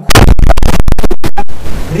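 A sudden blast of loud, harsh, distorted static lasting about a second and a half, cut by several brief dropouts, then a fainter hiss until the voice comes back: an audio signal glitch in the broadcast sound.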